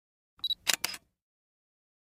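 Intro sound effect like a digital camera taking a picture: a short high beep, then two quick sharp shutter clicks, all within about the first second.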